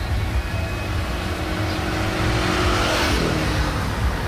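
Road traffic passing close by: a car and a motor scooter, their tyre and engine noise swelling to a peak about three seconds in and then fading, over a steady low rumble.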